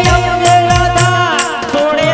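Indian folk-song accompaniment: a hand drum beating about three strokes a second, each bass stroke dropping in pitch, under a long held melody note that slides downward near the end.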